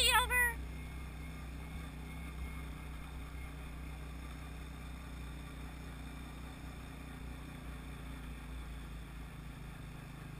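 ATV rolling along a dirt road at low speed, a steady low engine hum with tyre and road rumble. A brief rising-and-falling high call sounds in the first half second.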